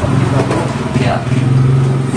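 Men talking, over a steady low background hum.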